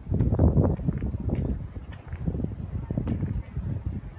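Wind buffeting the camera's microphone: an irregular, gusting low rumble, strongest about half a second in.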